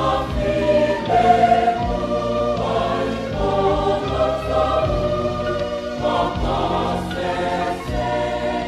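A choir singing a hymn over instrumental accompaniment, with sustained low bass notes and a slow, steady beat.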